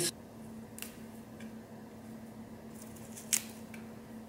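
Fresh mint leaves being plucked off a sprig by hand: a few faint snaps and rustles, with one sharper click a little over three seconds in.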